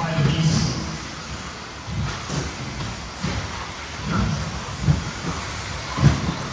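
Radio-control 2WD buggies racing on a turf track: motor and tyre noise that rises and falls as the cars pass, with a few sharp knocks from cars landing or hitting the track edges.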